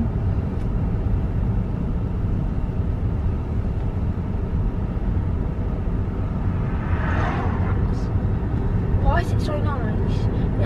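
Steady low road and tyre rumble inside the cabin of a moving Tesla Model 3 electric car.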